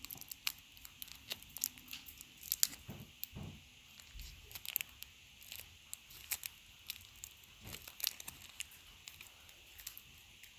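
Kit Kat being eaten close to the microphone: a run of irregular sharp crackles and crinkles, with a few dull low thumps.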